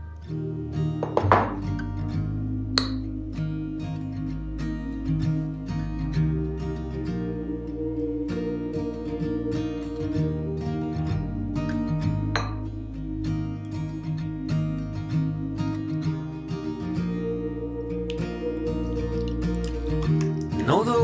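Instrumental background music with acoustic guitar, a gap between the song's sung lines. A few sharp clinks sound over it, about a second in, near three seconds and near twelve seconds: a metal spoon striking the dish as dry breadcrumbs and flour are stirred.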